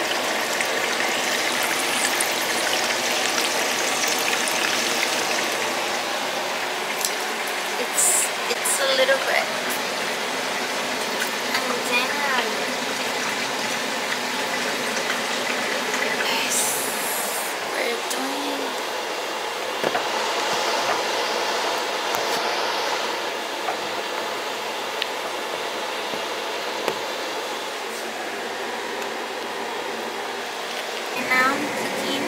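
Steady hiss of food cooking on a stovetop, with a few brief sharp clatters.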